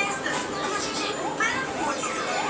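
Several high-pitched voices talking and calling over one another, like children playing, with pitch rising and falling throughout.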